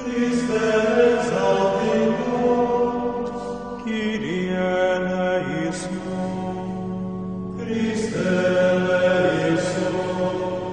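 Closing music of slow, sustained chant-style singing over held tones, with a new phrase starting about four seconds in and again near eight seconds.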